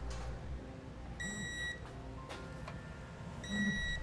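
Electronic torque wrench beeping twice, each a steady high beep about half a second long, about two seconds apart, signalling that the hitch bolt has reached its set torque.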